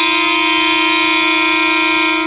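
Diesel locomotive horn sounding one long, steady blast: the second whistle that signals the train's departure.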